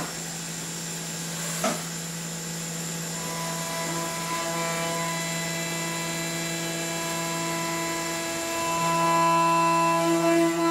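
Haas CNC vertical mill's end mill cutting a solid aluminum block. A single short knock comes shortly before two seconds in. From about three seconds in, a steady pitched whine with overtones rises as the cutter bites, louder near the end.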